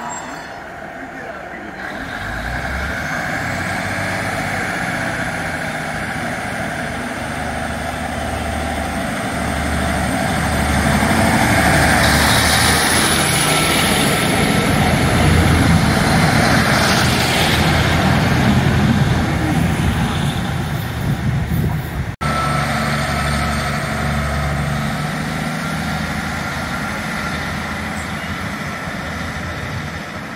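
Class 150 Sprinter diesel multiple unit's underfloor diesel engines throttling up as the train pulls away from the platform, with a whine rising in pitch over the first few seconds. The engine sound grows louder as the carriages move past, breaks off suddenly about two-thirds of the way through, then carries on more steadily.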